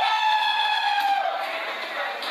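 A person's long, high-pitched yell held at one pitch for over a second, then fading away.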